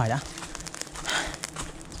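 Light, scattered crackling and rustling from a smoking torch of burning leaves and dry leaf litter being moved through, with a short hiss about a second in.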